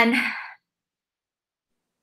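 A woman's voice trailing off on a drawn-out "and" in the first half-second, then complete silence.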